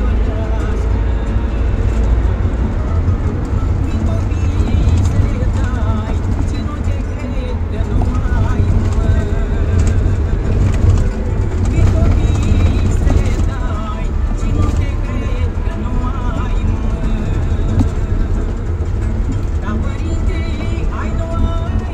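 Steady low engine and road rumble inside a moving passenger minibus, with indistinct voices and music playing faintly under it.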